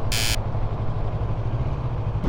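Yamaha MT-03 parallel-twin engine running steadily while riding, with wind noise on the helmet microphone. A brief high-pitched burst sounds right at the start.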